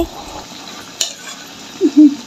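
Metal spatula stirring and scraping spiced cauliflower and potato in a metal kadhai, with a light frying sizzle. There is one sharp tap of the spatula against the pan about a second in.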